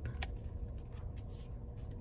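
Pokémon trading cards handled in a stack, moved from the front to the back of the pile by hand, with one short light tap about a quarter second in. A steady low rumble sits underneath, as heard inside a car's cabin.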